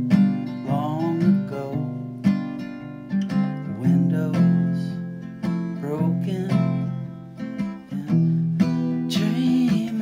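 Acoustic guitar played solo by hand, a steady run of plucked notes and chords in an instrumental passage.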